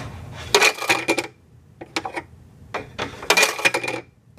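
Homemade air hockey goal-score sensor being tripped twice: its bent steel wire actuator rattles against the metal contact, with a short metallic ring, about half a second in and again near the end. Each trip closes the goal's score contact.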